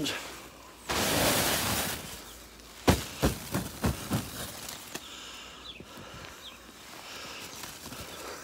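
Snow being knocked off a polytunnel's plastic cover: a second-long rush of sliding snow, then a quick run of about six sharp knocks as the cover is struck.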